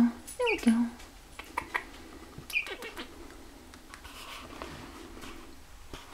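Canada gosling giving a few short, high peeps in the first half, with soft rustling and small clicks of cloth and plush being handled.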